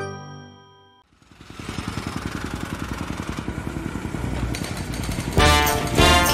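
A chiming logo jingle dies away, then an engine starts running with a fast, steady chugging pulse. Music comes in over it near the end.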